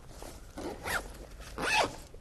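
Backpack zipper pulled in two quick strokes, one about a second in and another near the end.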